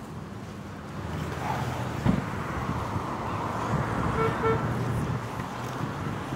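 Steady road-traffic noise, with a bump about two seconds in and a brief pitched tone, a short toot, about four seconds in.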